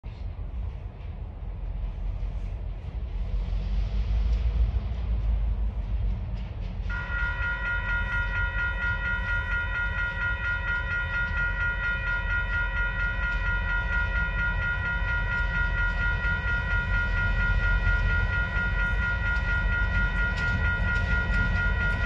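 Railroad crossing warning bells, WCH electronic bells, start up about seven seconds in and ring fast and steadily, with a steady low rumble underneath.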